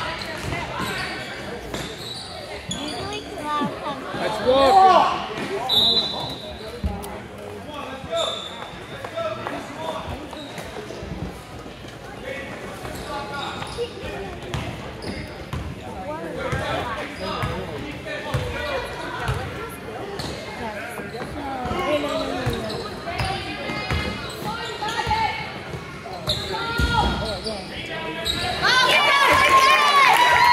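Basketball bouncing on a gym floor amid scattered spectator voices, with the reverberation of a large hall; the crowd noise swells near the end.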